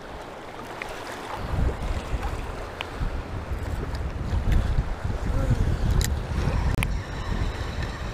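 Strong wind buffeting the microphone over choppy saltwater: a gusting low rumble that picks up about a second and a half in, with waves splashing and a few sharp ticks.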